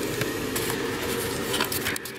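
Rubbing and a few light clicks from the handheld camera being swung around, with a cluster of clicks near the end, over a steady background hum.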